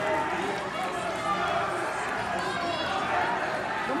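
Indistinct background chatter of a crowd of spectators and teammates in a gym, with a man beginning a loud shout right at the end.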